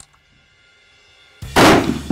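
A single shot from a Howa bolt-action hunting rifle, sudden and loud, about one and a half seconds in, with a short echoing tail.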